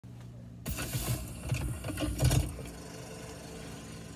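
Irregular knocks and rustling, like a phone being handled, from about half a second in to about two and a half seconds, over a low steady hum inside the car.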